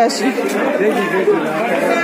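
Steady chatter of many overlapping voices in a busy indoor market hall, with no single voice standing out.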